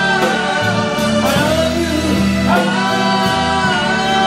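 A live blues/pop-rock band playing, with a singer holding long, bending notes over bass and drums, and a cymbal ticking about twice a second.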